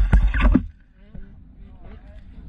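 Heavy thumps and knocks picked up by a helmet camera as a dirt bike goes down in a crash, lasting about half a second, then dropping to a much quieter background.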